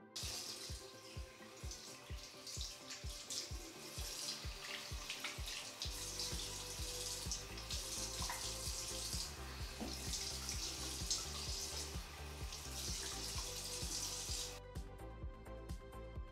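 Bathroom sink faucet running into the basin while water is splashed on the face to rinse off facial soap. The water is shut off about a second and a half before the end. Background music with a steady beat plays throughout.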